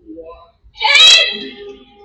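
A person's voice, with a sudden loud cry or exclamation about a second in and softer vocal sounds before it.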